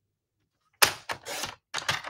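Stampin' Up! paper trimmer cutting a sheet of white cardstock: about a second in, a sharp click as the cutter goes down, then scraping as the blade runs along the rail, with a few more clicks near the end.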